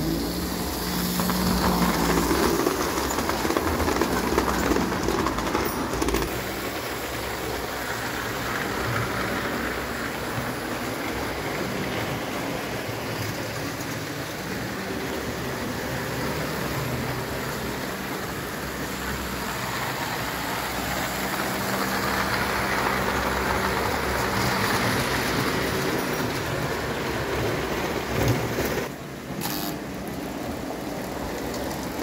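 JEP O-gauge tinplate 2-B-2 electric locomotive running on tinplate track: a steady rumble of wheels and pickup on the metal rails with a faint motor hum, louder for the first several seconds.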